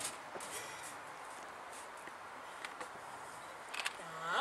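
Low steady open-air background hiss, with a few faint knocks late on that are footsteps on the wooden stage boards.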